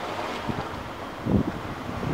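Wind buffeting an outdoor microphone: a steady low rumble and hiss, with a stronger gust about a second and a half in.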